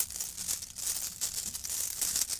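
Clear plastic bag crinkling as it is handled and shaken, with the divination shells inside shifting and clicking in a dense, irregular crackle.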